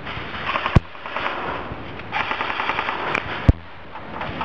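Airsoft guns firing in a confined space: a short rattling burst, then a longer rapid automatic burst of about a second, typical of an electric airsoft rifle. Two sharp loud cracks, one just under a second in and one near the end, stand out above the rest.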